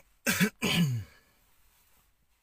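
A person clearing their throat: two short, loud bursts in quick succession, the second falling in pitch.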